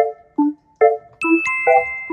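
Bouncy background music: short pitched keyboard or mallet notes about two and a half a second, with a bright bell-like note ringing on from a little past a second in.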